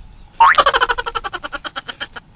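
A cartoon 'boing' sound effect: a sudden twang rising in pitch about half a second in, then a fast, even wobble that fades out.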